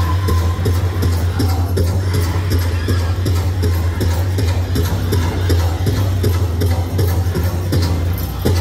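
Powwow drum song: a big drum struck in a steady beat by a drum group, with their singing.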